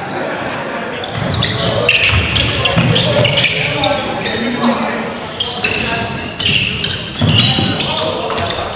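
Live basketball play in a gymnasium: a ball bouncing on the hardwood court amid players' voices calling out, echoing in the hall.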